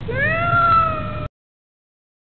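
A single long cat meow that rises in pitch at the start, holds, then falls slightly, cut off abruptly after a little over a second.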